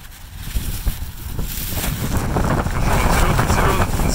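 Wind buffeting the microphone as a low rumble, with the crinkling of a thin plastic produce bag being handled close by, both growing louder in the second half.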